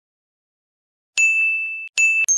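A high, bell-like ding sound effect, struck once about a second in and ringing on one clear tone as it fades, then struck again right at the end.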